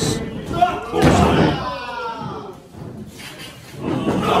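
Bodies hitting hard in a pro-wrestling shoulder block: a sharp thud right at the start and another, louder one about a second in, with a body landing on the ring mat. A man's voice follows.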